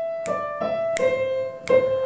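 Digital piano playing a few single notes one after another, each struck and left ringing.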